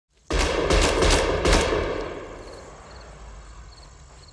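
A quick run of about four gunshots in the first second and a half, their echo dying away over the next second, followed by crickets chirping faintly.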